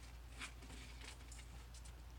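Very quiet room tone with a steady low hum and a few faint, brief ticks: one about half a second in and a small cluster near the end.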